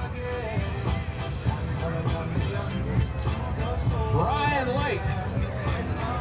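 Music playing over a public address system, with a voice that rises and falls around four seconds in.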